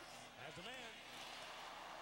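Faint man's voice over a steady, quiet background hiss.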